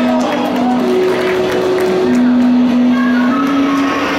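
Electronic synthesizer playing long, steady held notes in a slow, simple line, with higher sustained notes coming in near the end.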